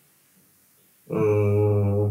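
A man's voice holding one steady, level-pitched drawn-out hum for about a second, starting about a second in after near silence.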